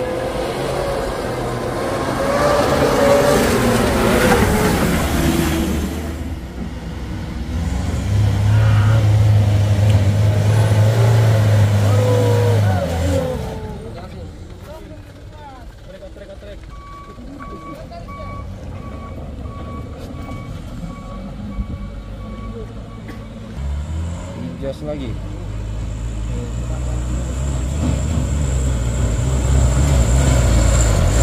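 Truck engines labouring up a steep muddy climb: revving with rising pitch, then a heavy low steady drone that cuts off suddenly. After that a reversing beeper sounds a regular series of short beeps for several seconds, and a low engine drone builds again near the end.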